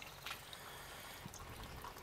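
Faint trickle of distillate running from the distillation unit's outlet pipe into a funnel, with a couple of faint drips.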